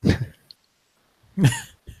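A person coughing twice: two short, sharp coughs about a second and a half apart.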